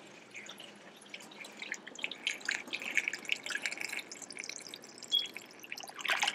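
C-41 color developer draining from a film developing tank into a plastic funnel and down into its storage bottle, trickling and splashing irregularly. The pouring is faint at first and gets busier from about two seconds in. This is the used developer being returned to its bottle at the end of the development step.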